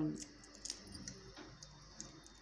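Faint, scattered light clicks and ticks from hands peeling a hard-boiled egg over a steel bowl of water.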